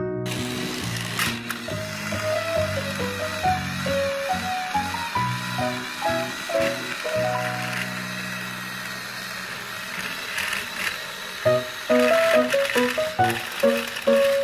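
Bouncy background music with a plucked, stepwise melody, over a steady whir of small battery-powered toy train motors straining as two engines push against each other.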